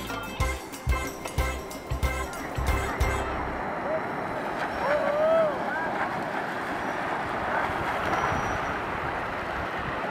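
Background music with a steady beat cuts off abruptly about three seconds in. After that comes a steady wash of surf and wind noise, with a few brief shouted calls about five seconds in.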